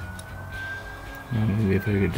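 A faint distant siren: one thin wailing tone that slowly rises a little and then falls away.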